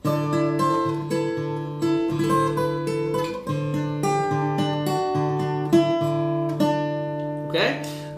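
Takamine acoustic guitar played fingerstyle: a repeated low bass note picked under a melody of plucked notes that are left ringing. The playing stops shortly before the end.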